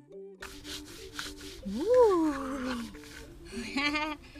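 Handstone scraping over a stone grinding slab in repeated rubbing strokes, starting about half a second in, as coarse sesame paste is ground by hand. A woman's rising-then-falling vocal exclamation about two seconds in is the loudest sound, and a short laugh follows near the end, over quiet plucked-string background music.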